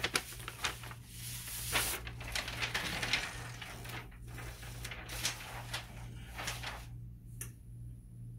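A sheet of butcher paper rustling and crinkling as it is handled and pulled up, in irregular crackles that stop about seven seconds in. A low steady hum runs underneath.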